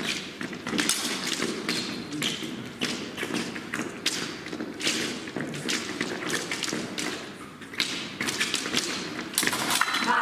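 Épée fencers' footwork on the piste: irregular taps and thuds of quick advancing and retreating steps, with a denser flurry near the end as one fencer lunges.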